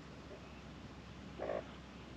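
A single short, low croaking animal call about one and a half seconds in.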